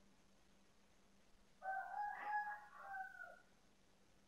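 A single faint animal call with a steady pitch, lasting nearly two seconds, starting about one and a half seconds in, over quiet room tone.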